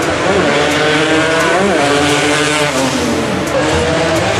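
Racing motorcycle engine at high revs as the bike rides past, its pitch rising briefly and then dropping as it goes by.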